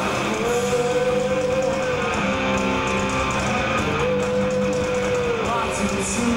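Alternative rock band playing live: electric guitars over bass and drums, with a singer holding two long notes.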